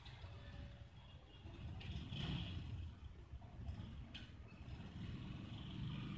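Faint low background rumble, with a soft noisy rustle about two seconds in and another about four seconds in.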